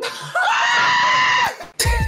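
A person screams once in fright at a jumpscare: a loud, high-pitched scream held for about a second. A startled exclaimed word follows near the end.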